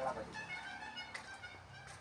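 Faint series of short, high-pitched animal calls.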